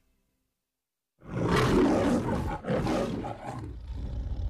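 Recorded lion roar of the Metro-Goldwyn-Mayer studio logo. It comes in loud after about a second of silence, dips briefly, then roars again.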